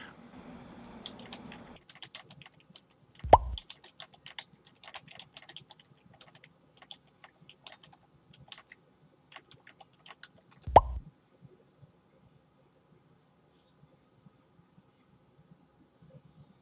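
Faint, irregular clicking of computer keys being typed, with two brief louder knocks, one about three seconds in and one about eleven seconds in.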